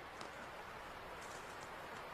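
Faint steady hiss with a few soft ticks: near-quiet inside the tent, with no clear sound standing out.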